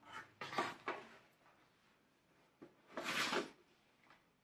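Cardboard model-kit boxes being handled on a wooden table and in a shipping carton: a few short scuffs and taps in the first second, then a longer, louder cardboard scrape about three seconds in as the next box is drawn out.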